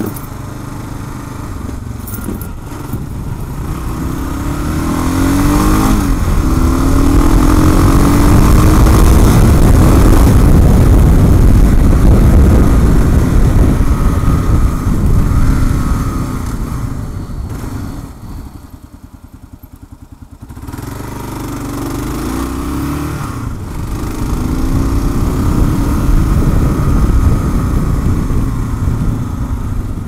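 2016 Kawasaki KLR650's single-cylinder engine pulling through the gears with rising pitch. A little after halfway it drops to a slow idle for about two seconds, then accelerates again.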